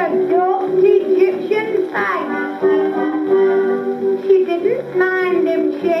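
Acoustic-era 78 rpm record played on an Orthophonic Victrola Credenza gramophone: a high woman's singing voice sliding between notes over band accompaniment with a steady held note, as a comic song continues.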